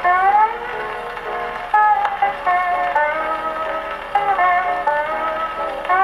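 Acoustic-era Pathé vertical-cut disc of Hawaiian steel guitar music playing on an Edison disc phonograph. The steel guitar slides up in pitch at the start, then carries the melody over guitar accompaniment. The sound is thin and muffled, like an old record.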